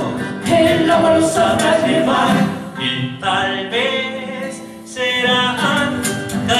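Live Argentine folk song: several voices singing together over acoustic guitar accompaniment, the phrase dropping off briefly around the middle before the singing picks up again.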